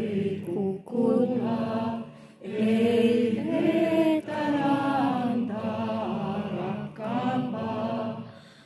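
A group of people singing a slow song together, in sung phrases of a second or two with short breaks between them.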